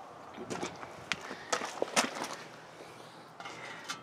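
Several light clicks and knocks over faint rustling, most of them in the first two seconds.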